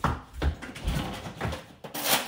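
A few soft knocks and low thumps, about half a second apart, as a low kitchen drawer or cabinet is pulled open and handled.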